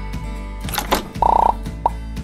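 Animated logo intro jingle: music over a steady bass, with a whoosh just before the middle, then a short bright pop and a quick rising blip as the logo lands.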